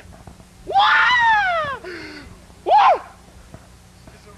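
A man's imitation of Bruce Lee's martial-arts yells. First comes a long, high-pitched wail of about a second that rises and then falls in pitch. A short, sharp cry follows near the three-second mark.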